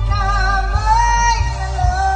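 Male singer singing a slow Filipino ballad live into a microphone over instrumental accompaniment, his voice with vibrato gliding up to a held high note about a second in.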